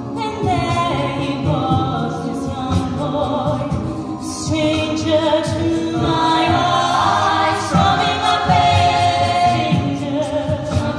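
A mixed-voice a cappella group singing into microphones, with sustained chords over a low vocal bass line, getting louder about six seconds in.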